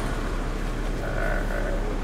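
Steady low rumble of a minibus engine and road noise heard from inside the cabin while it creeps along in slow traffic.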